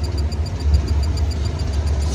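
Test Track ride vehicle running with a steady low rumble, overlaid by a quick run of light high electronic beeps, about five a second, from the ride's onboard effects as it scans the car.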